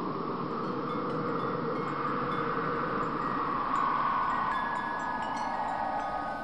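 Logo sound effect: an airy whoosh that swells gently, overlaid with tinkling chime tones that grow more frequent and sustained in the second half.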